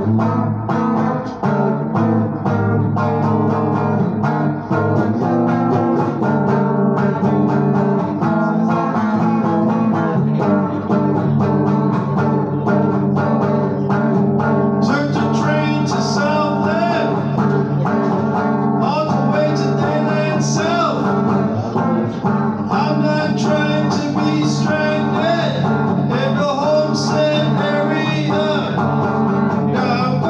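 Live solo guitar playing a steady chord pattern, with a man singing over it from about halfway through.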